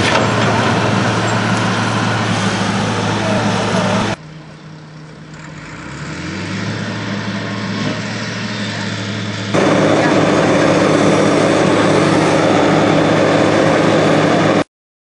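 Diesel engines of Volvo wheeled excavators running steadily. About four seconds in the sound drops abruptly to a quieter stretch in which an engine speeds up, then jumps back louder near ten seconds.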